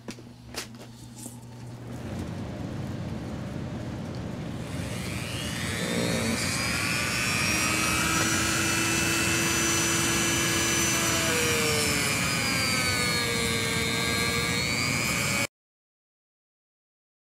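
A shop exhaust fan starts up, its rush of air building over several seconds. About five seconds in, the whine of a handheld rotary tool joins it, rising in pitch as the tool spins up. The whine holds, then dips in pitch near the end before the sound cuts off suddenly.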